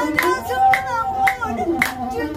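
A woman singing an Ethiopian azmari song to a masenqo (one-string bowed fiddle), with sharp hand claps keeping time about twice a second.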